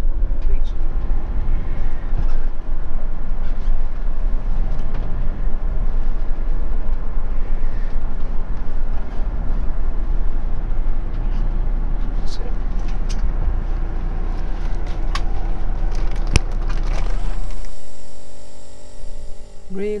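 Motorhome driving slowly, heard from inside the cab: a steady low engine and road rumble with a few sharp clicks and rattles. The rumble cuts off about two seconds before the end.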